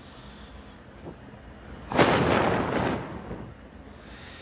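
A sudden rush of noise on a close phone microphone about two seconds in, lasting about a second and fading, over faint hiss.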